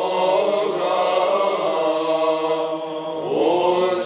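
Orthodox church chant: voices singing long held phrases over a steady low drone note, with a new phrase rising in near the end.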